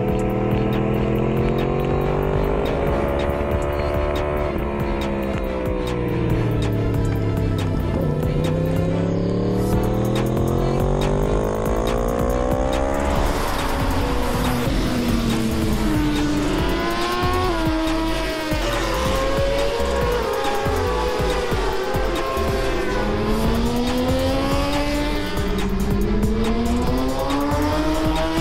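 Racing motorcycle engines at high revs, pitch repeatedly climbing through the gears and dropping back at each shift. Music plays underneath.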